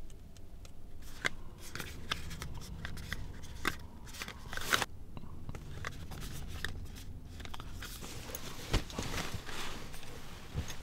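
A 35 mm film box and its roll being unpacked and handled by hand: paper and cardboard rustling and crinkling, with a string of small sharp clicks. A louder knock comes near the end, over a low steady hum.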